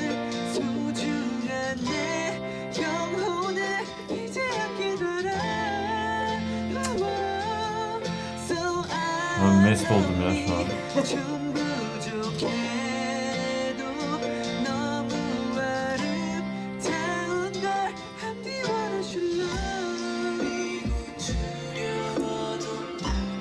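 A man sings into a handheld karaoke microphone while accompanying himself with chords on a keyboard piano, a solo practice take.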